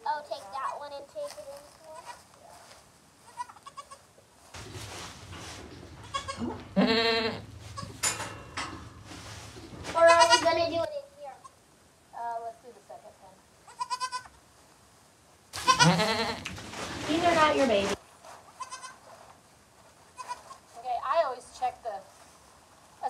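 Boer goats bleating, a doe with her newborn kids: several long calls that waver in pitch, the loudest about ten and sixteen seconds in.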